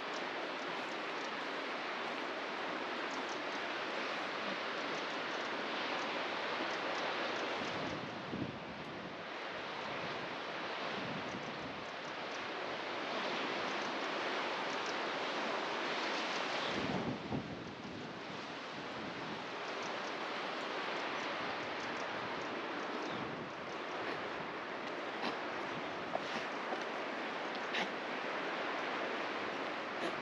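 Steady wind and sea surf breaking on a rocky shore, with gusts of wind rumbling on the microphone about eight and seventeen seconds in.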